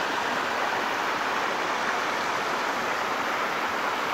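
Water spilling over a low stone weir and splashing into the shallow river below, a steady rushing splash. The river is low, so only a little water is falling over part of the weir crest.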